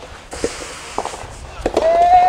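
Soft tennis rally: a few sharp pops of the soft rubber ball striking rackets and the court, about half a second apart, then a player's long held shout starting near the end.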